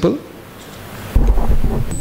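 Handling rumble of a microphone as it is lifted from its stand: a loud, low rumble that starts suddenly a little past a second in, after a moment of quiet room tone.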